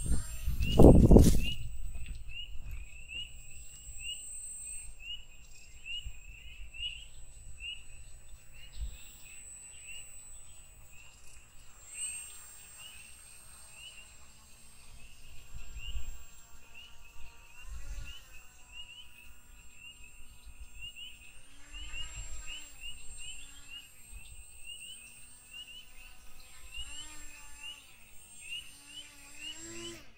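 Small RC airboat's electric propeller motor, heard at a distance, whining up and down in pitch in short spells as it is throttled, over a steady chorus of high chirping calls repeating about twice a second. A loud low rumble on the microphone about a second in.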